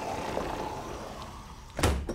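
A door being opened, then shut with a loud thud near the end.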